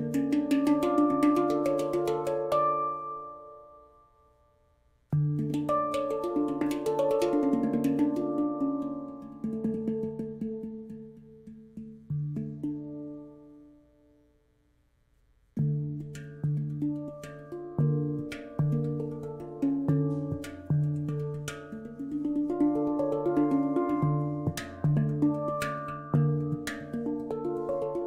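Nirvana handpan, a 21-inch PC-steel pan in the D Sinistra 9 scale, played by hand: struck notes ring out over the low D and twice die away almost to silence, then from about halfway on a denser, steady rhythmic pattern of strikes.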